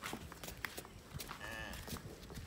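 Faint hoof knocks of a water buffalo walking on brick paving as it is led on a rope, with a brief call about one and a half seconds in.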